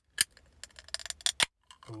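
Fingers working at the pull-tab of an aluminium seltzer can: a sharp click, then a run of small ticks and clicks.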